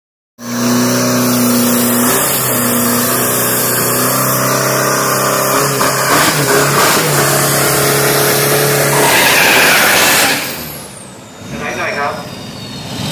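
Drag-racing Isuzu pickup's turbodiesel engine held at high, steady revs through a burnout, the rear tyre spinning on the track. About ten seconds in it lets off and the sound drops away, with a high whistle falling in pitch.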